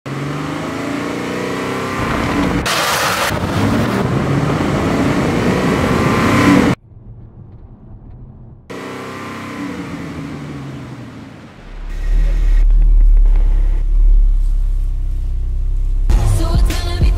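Kia Stinger GT1's 3.3-litre V6 revving and accelerating, its engine note gliding up and down in pitch. It cuts off suddenly about seven seconds in, returns after a quieter stretch, and gives way to a deep steady low rumble from about twelve seconds.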